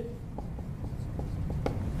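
Faint sound of writing, a pen or marker moving across a surface, with a few light ticks.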